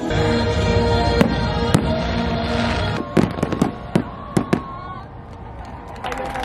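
Aerial fireworks going off over music: two sharp bangs in the first two seconds, then a quick cluster of bangs and cracks about three seconds in, after which it gets quieter.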